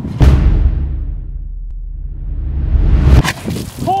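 Whoosh sound effect with a deep bass rumble: a sudden swoosh that falls away, a steady low rumble, then a rising swoosh that cuts off abruptly about three seconds in.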